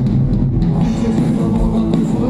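Punk rock band playing live: electric guitar and drum kit, loud and continuous.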